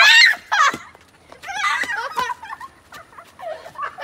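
Girls shrieking: a loud, high rising scream at the start, then shorter squealing cries that fade as they run off.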